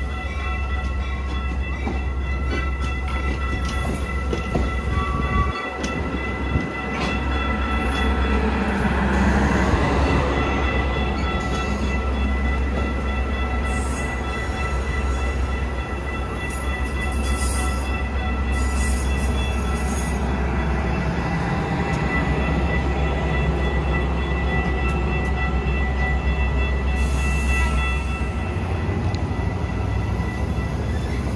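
Metra bilevel commuter train standing at the platform: a steady low hum with several constant high-pitched whines over it, the low hum rising in pitch near the end.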